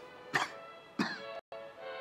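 A person coughing twice, short and sharp, about a third of a second and a second in, over soft background music; the sound cuts out completely for an instant about a second and a half in.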